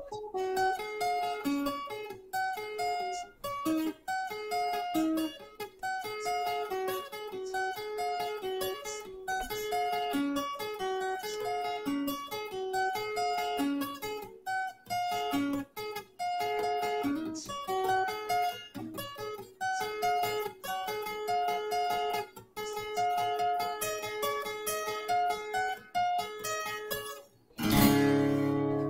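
Steel-string acoustic guitar picking a single-note melodic riff, about four notes a second, the phrase repeating over and over, heard through a video-chat connection.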